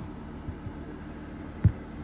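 Steady low background hum with two short dull thumps, typical of a handheld phone being bumped or shifted against a plastic tub; the second thump, about a second and a half in, is the louder.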